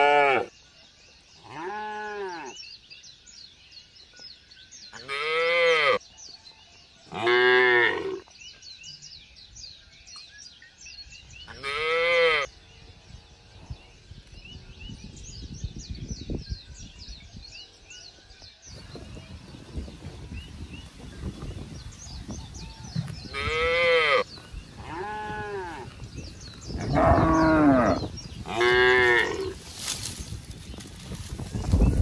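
Zebu-type cattle mooing repeatedly: short calls, each rising and falling in pitch, several in the first twelve seconds and another cluster near the end, with a long gap without calls in the middle.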